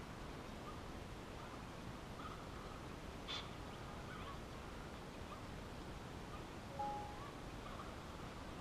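Faint scattered chirps of distant birds over a low background hiss. There is a brief sharp call a little over three seconds in and a short steady note near the end.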